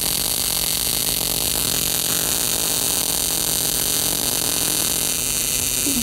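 High-frequency, high-voltage electrical discharge arcing through the glass of a light bulb and making the gas inside glow, giving a steady hiss and buzz over a low mains hum.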